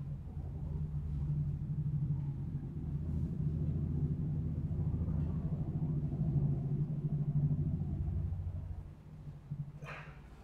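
A low, steady rumbling hum that eases off about nine seconds in.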